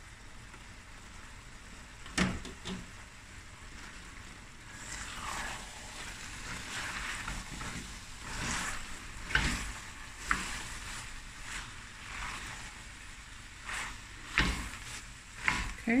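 A wooden spoon stirring cooked black-eyed beans into a thick curry base in a stainless steel pot: irregular scraping strokes over a faint sizzle, with a few sharp knocks of utensils against the pot.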